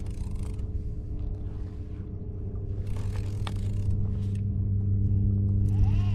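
Steady low motor hum that grows louder over the second half, with a few brief scraping and rustling noises on top.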